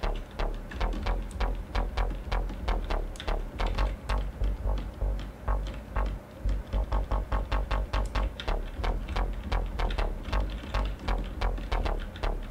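Diversion software synthesizer playing a hard, gritty bass patch in quick short repeated notes, about four a second, with a very deep low end. The grit comes from an acid low-pass filter on the synth's first bus.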